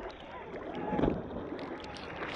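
Sea water sloshing and lapping around a camera held at the waterline, with a louder surge of water about a second in.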